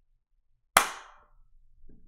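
A single sharp hand clap, loud and close to the microphone, about three-quarters of a second in, fading over about half a second.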